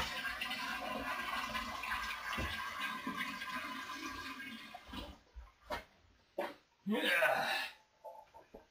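Tap water running steadily into a container, cut off about five seconds in, followed by a few light knocks.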